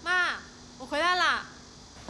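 Two short pitched vocal calls about a second apart, each rising and then falling in pitch.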